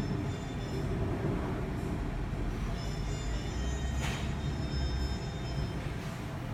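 Steady low rumble with faint background music, and a brief clatter about four seconds in.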